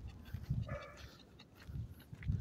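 A small dog gives one brief high-pitched whine about three-quarters of a second in, over repeated low knocks and rustling from the walk.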